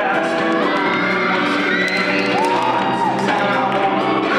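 A vocal pop song playing as accompaniment music, with a note that rises and is then held for about a second midway.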